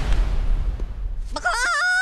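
A cartoon Minion's voice crowing like a rooster: one short stepped call near the end, after a steady rush of noise.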